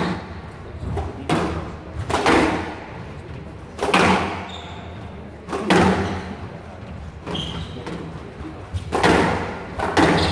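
A squash rally: the ball is struck hard by rackets and smacks off the court walls, a sharp crack roughly every one to two seconds. Each hit rings on in the hall.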